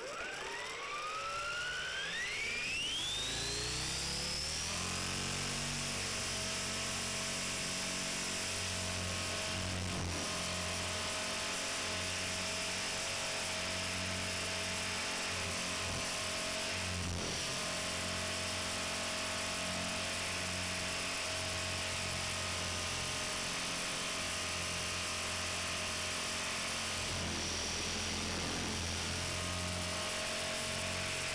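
Belt CP V2 electric RC helicopter spooling up: its motor and rotor whine rises in pitch over the first four or five seconds, then runs steady at flight speed, heard close up from on board.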